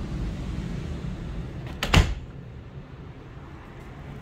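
A closet door being swung shut: a couple of light clicks, then a short, sharp knock of the door and latch about halfway through. The steady low rumble before it drops off once the door is closed.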